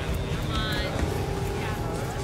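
Steady low rumble from a ferry's engine and wind on the open deck, with voices and faint background music over it.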